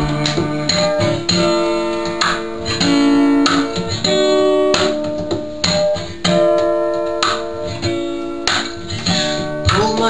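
Acoustic guitar played solo in a folk song's instrumental break, strummed chords ringing out one after another.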